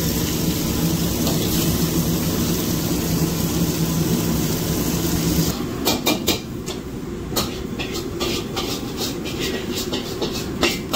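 Steady kitchen noise at a griddle station, a constant hum with a low steady tone underneath, which cuts off abruptly about five and a half seconds in. After that, scattered sharp clicks and knocks sound irregularly over a quieter background.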